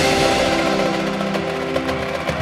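Indoor percussion ensemble playing: a held chord from the mallet keyboards rings and slowly fades, with light, quick taps coming in near the end.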